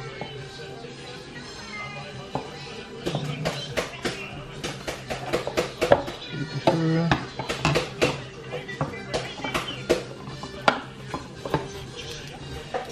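Plastic side-mirror housing and its inner parts clicking and knocking as they are handled and pulled apart, in a run of sharp clicks from about three seconds in, over background music.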